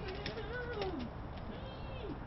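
A person's drawn-out voice gliding up and down in pitch, falling away about a second in and again near the end, with light clicks or footsteps.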